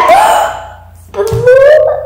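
Children's wordless vocalising: a loud excited exclamation at the start, then after a short pause a drawn-out, slightly rising 'ooh' in the last second.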